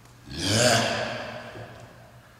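A person breathing out hard with one upward dumbbell punch: a single breath that swells and fades over about a second, the exertion breath of one repetition.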